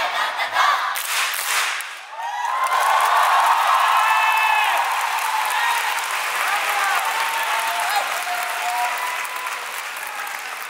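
Audience applauding and cheering: after a short loud burst about a second in and a brief dip, clapping and many screaming, whooping voices swell up and carry on, easing slightly near the end.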